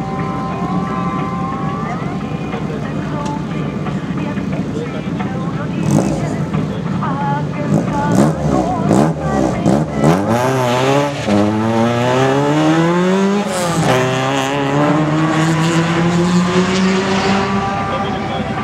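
Nissan Sunny GTi's four-cylinder engine idling at the start line, blipped up in sharp revs, then launching about ten seconds in and accelerating hard away. The pitch climbs through the gears, with two upshifts a couple of seconds apart.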